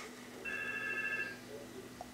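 A steady electronic tone from a Samsung smartphone, a chord of a few pure pitches that sounds for about a second, starting about half a second in.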